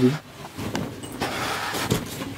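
Cloth rustling and swishing as a woollen shawl is shaken out and spread over others, growing brighter toward the end.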